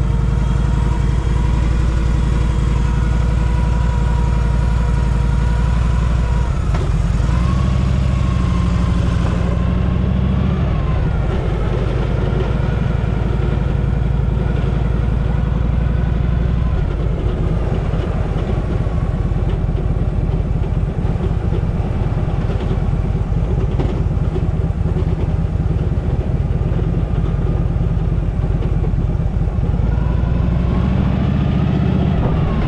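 Harley-Davidson Panhead V-twin engine, its carburettor freshly adjusted, idling steadily, then revving as the motorcycle pulls away about seven seconds in and running under way as it is ridden along.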